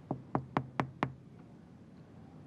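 Five quick knocks on a door, about four a second, the first a little softer.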